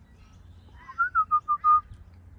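Butcherbird singing a short phrase of five or six clear, fluty whistled notes about a second in: a rising first note, then level notes stepping slightly down.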